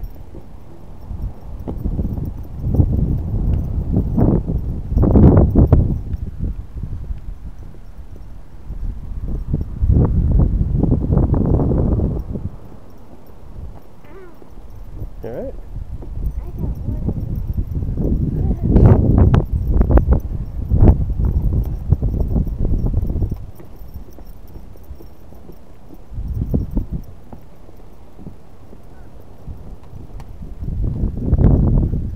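Footsteps on the wooden boardwalk planks while walking, with gusts of low rumbling wind on the microphone that rise and fall several times.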